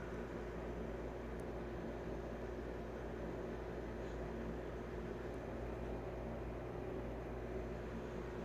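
Steady low background hiss and hum with no distinct sounds: room tone.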